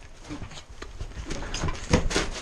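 Hurried footsteps on wet grass with gear and clothing rustling, a few scattered soft knocks, and a sharper thump near the end.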